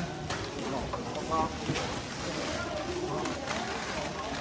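Several people talking in the background over handling noise, with a few short knocks and rustles from cardboard boxes and plastic bags of goods being moved.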